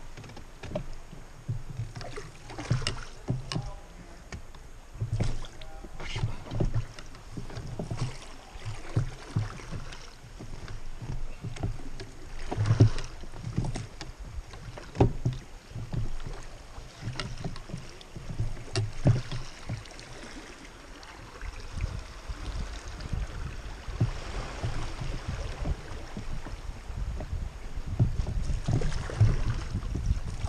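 Inflatable raft being rowed on moving river water: irregular splashes and slaps of the oar blades and of water against the raft's tubes. A steadier low rush builds in the last third.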